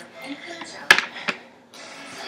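Hard plastic sippy cup pieces knocking on a tabletop: one sharp knock about a second in, then a lighter one.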